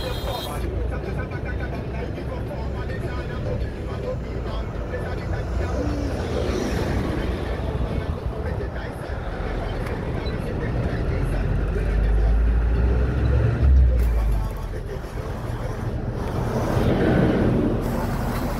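Road traffic with heavy trucks and cars passing close by, a low engine rumble that swells loudest about twelve to fourteen seconds in, with people's voices in the background.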